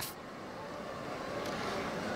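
Steady background noise of a busy city square, a faint hum of distant traffic and passers-by, rising slightly in level.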